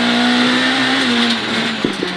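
Renault Clio Williams rally car's four-cylinder engine heard from inside the cabin, held at a steady high note and then dropping in pitch about a second and a half in as the car slows for a hairpin, with a short click near the end.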